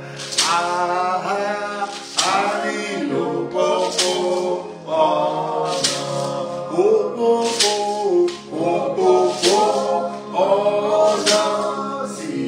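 A man singing a gospel hymn in long held, sliding notes, over a steady sustained backing tone, with sharp percussive hits on a slow beat.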